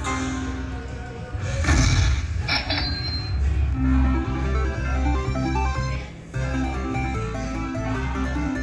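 Aristocrat Dragon Link slot machine playing its bonus-win music: a bright burst about two seconds in, then a running tune over a steady low beat as the $500 win is counted up on the meter.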